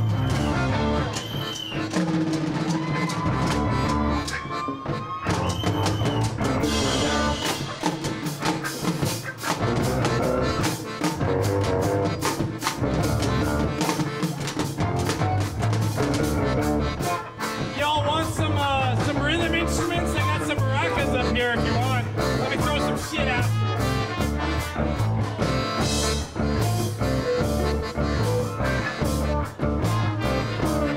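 Live band playing an upbeat song on drum kit, electric bass and guitars. A wavering lead melody rides over the groove from about eighteen seconds in, for some five seconds.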